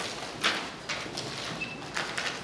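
Hard-soled footsteps and loose papers being shuffled: a few sharp knocks and clicks, the loudest about half a second in, with a brief high squeak near the end.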